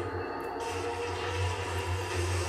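A steady low rumbling drone from the anime episode's soundtrack, playing quietly.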